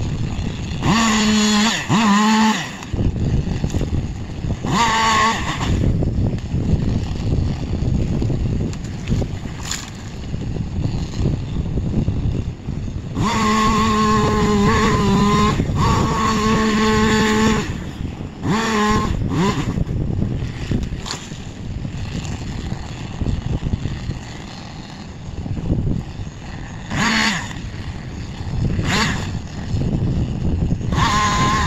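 Battery-powered Husqvarna top-handle chainsaw cutting in short bursts, its motor whine starting and stopping abruptly with no idle between cuts. The two longest cuts come in the middle, over a steady low rumble.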